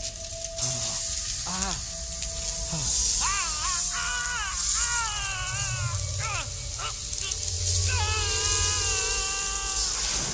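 Animated film soundtrack: music and sound effects over a loud rushing hiss, with several wavering, pitch-bending tones that come and go.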